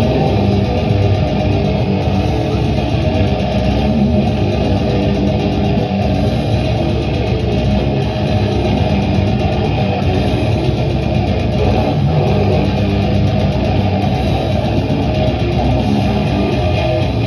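Live metal band playing loud, unbroken music: distorted electric guitar over drums with fast, even cymbal strokes, heard from within the crowd.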